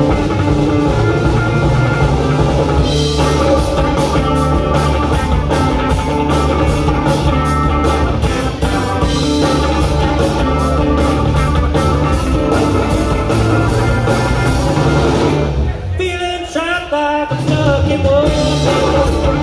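Live rock band playing loudly, with electric guitars, keyboards, bass and drum kit on a steady beat. Near the end the bass and drums drop out for a moment under a lone lead line that bends up and down in pitch, then the full band comes back in.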